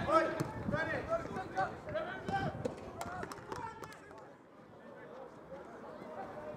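Distant shouts and calls of players on a five-a-side football pitch, with a quick run of sharp knocks about three seconds in from the ball being kicked; the calls die down near the end.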